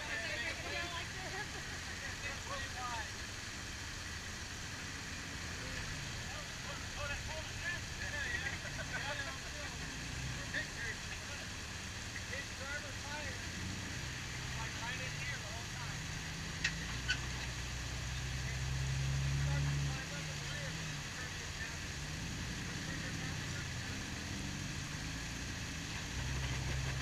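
Jeep Wrangler engine running at low crawling revs, pulling harder for about two seconds about three-quarters of the way in as the Jeep climbs a rock ledge. Two sharp clicks or knocks come just before that.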